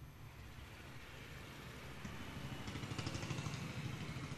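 Faint street traffic noise, a low rumble that swells about two seconds in.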